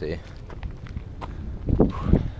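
Footsteps of several people walking up a paved road, a few sharp scuffs over a low rumble. A brief voice sound comes near the end.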